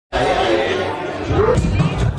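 Indistinct chatter of a club crowd over the bass of a DJ set. The bass comes up more strongly about halfway through.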